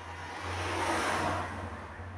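A vehicle passing by: a rush of noise that swells to a peak about a second in and fades away, over a steady low hum.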